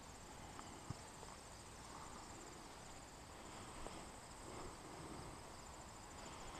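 Faint outdoor insect chirring: a high, rapidly pulsing trill that keeps on steadily, with one soft tap about a second in.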